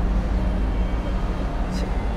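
Steady low rumble and background noise on a hand-held phone microphone, with no distinct sound standing out.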